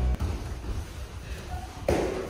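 Muffled thuds of taekwondo kicks landing and feet on foam training mats, with faint voices, and one louder thump near the end.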